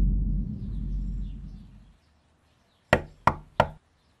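A low rumble fades away, then three quick knocks on a door come about three seconds in.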